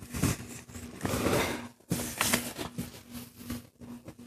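A sheet of white paper rustling and sliding under the hands as it is folded in half and the crease pressed flat, in irregular short swishes.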